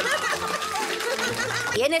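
Voices over background music, several overlapping, with a short spoken question near the end.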